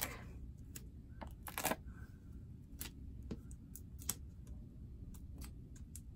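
Faint, scattered small clicks and ticks of hands working foam adhesive dimensionals: pads peeled off their backing sheet and pressed onto a small cardstock circle.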